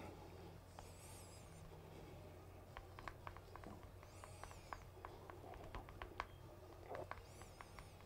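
Near silence: a low steady hum with faint scattered clicks in the middle and three faint high warbling chirps, about a second in, midway and near the end.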